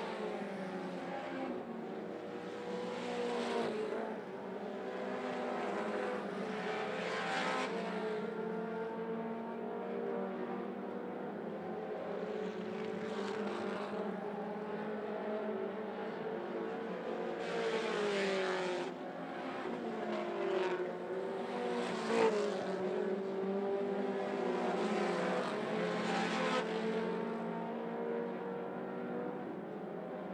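Several four-cylinder mini stock race cars running laps on a dirt oval. Their engines rise and fall in pitch through the corners and down the straights, overlapping one another. The sound swells every few seconds as cars pass close by.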